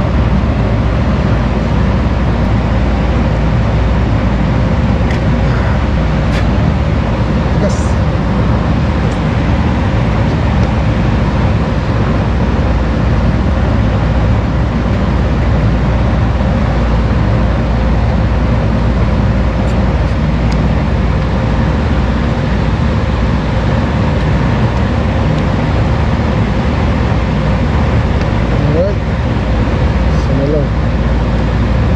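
Loud, steady machine drone with a low rumble and a faint hum, unchanging throughout, with a couple of small clicks about six and eight seconds in.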